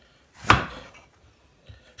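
A kitchen knife chops through an apple and strikes the cutting board once, about half a second in.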